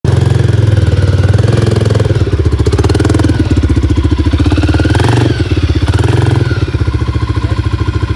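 Stock Can-Am DS250 ATV's single-cylinder four-stroke engine running loud at low speed under the rider's throttle, with two brief rises in pitch about five and six seconds in.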